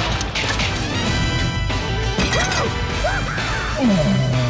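Film trailer music under a rapid run of sharp clacking hits from an animated chopstick duel.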